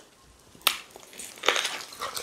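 Close-up eating sounds: a sharp click, then a short crunch about three quarters of the way through as a mouthful of meat and fufu in okra soup is bitten and chewed.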